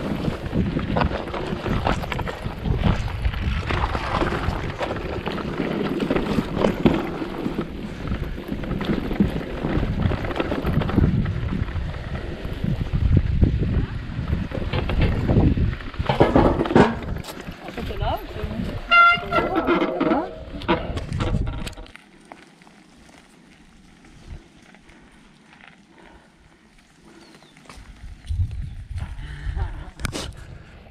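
A mountain bike rolling fast over a rough grassy trail: a continuous jolting rumble and rattle mixed with wind on the microphone. About 19 s in a short pitched sound cuts through. Around 22 s the noise drops suddenly to a much quieter background.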